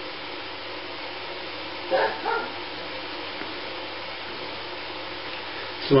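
A man tasting a glass of homemade beer, with one short voiced sound from him about two seconds in, such as an appreciative "ahh" after the sip. Throughout, a steady background hum.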